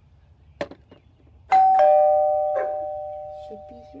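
Electric doorbell chime sounding ding-dong: a higher note, then a lower one just after, both ringing on and fading slowly. A short click comes about a second before the chime.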